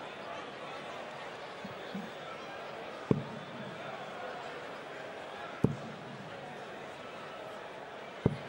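Two darts striking a bristle dartboard, each a short sharp thud, the second about two and a half seconds after the first, over the steady murmur of an arena crowd.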